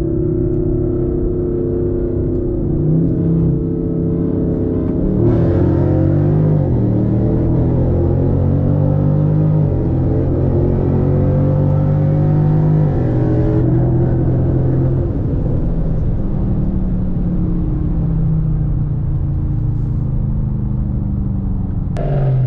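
V8 car engine heard from inside the cabin at highway speed, its note holding steady and stepping in pitch a few times as gears change. Between about five and fourteen seconds in it runs harder, with more road and wind noise.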